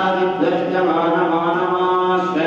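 Voices chanting Hindu mantras in a sustained, sing-song recitation, the pitch holding on a note and then stepping to the next.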